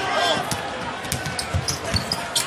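Basketball being dribbled on a hardwood court: a run of sharp bounces about half a second apart over a steady arena background.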